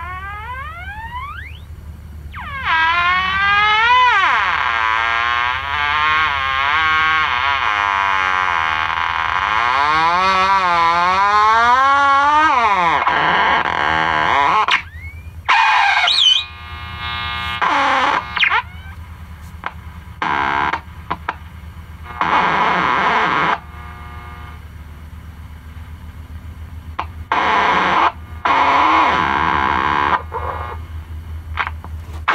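Zenith 7S529 tube radio's loudspeaker being tuned across the band: whistles slide up and down in pitch over hiss as the tuning knob turns through signals. After about fifteen seconds it breaks into short bursts of static and station sound that cut in and out, over a steady low hum.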